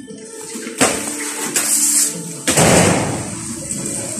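Sledgehammer striking a concrete slab to break it up, two heavy blows about a second and a half apart, the second trailing into a crumble of breaking concrete.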